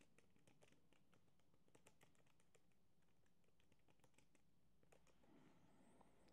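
Faint typing on a MacBook Air's built-in keyboard: a quick, irregular string of soft key clicks.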